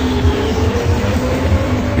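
A steady low drone with a few faint held tones above it.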